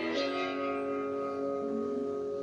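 Instrumental background music with held notes, the chord changing just after the start.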